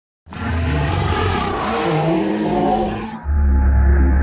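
Logo intro sound effect: a loud, noisy rush with a gliding pitch over a heavy low rumble, then about three seconds in a deep, steady horn-like tone takes over.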